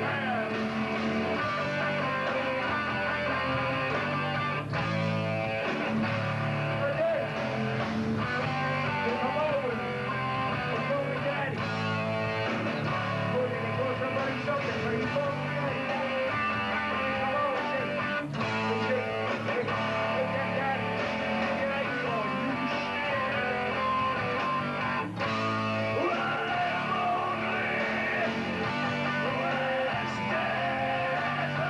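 A New York hardcore punk band playing live: loud, steady guitar chords over bass and drums.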